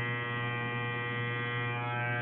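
Electric hair clippers running with a steady buzz while cutting hair.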